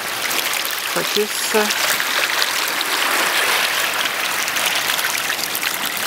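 Shallow surf washing over the beach where masses of spawning capelin are rolling in the water's edge: a steady hiss of moving water with many small splashes from the fish.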